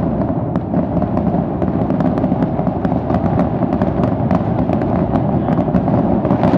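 Aerial fireworks going off in a continuous barrage: a dense, steady rumble of shell bursts with many sharp crackling pops throughout.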